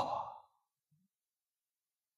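A man's spoken 'ah' trailing off breathily in the first half-second, then dead silence.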